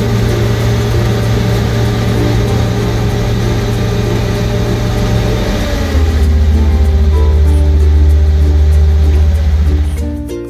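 Tractor engine and a loader-mounted bale spreader running steadily as it shreds and throws out a bale of bedding, heard from inside the tractor cab. A little over halfway through, the deep engine hum drops lower and gets louder.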